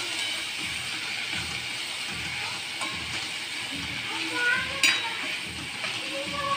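Spring onion greens frying in a metal kadhai, sizzling steadily while a spatula stirs them in regular strokes, with one sharp clink of the spatula against the pan near the end.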